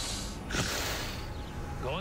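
A woman's vampire hiss through bared fangs, a harsh breathy burst about half a second in that lasts well under a second.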